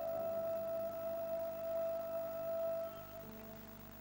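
Soft instrumental background music: one long held note that fades out about three seconds in, followed by quieter low notes.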